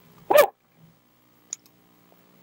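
A man shouting a single short "Woo!", Ric Flair's trademark yell, about a third of a second in. A faint click follows near the middle.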